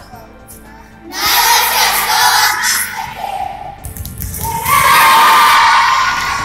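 A group of children shouting together twice, a first cheer about a second in and a louder, held shout near the end, over background music.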